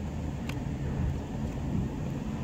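Road and engine noise heard inside a moving car's cabin: a steady low rumble, with one faint click about half a second in.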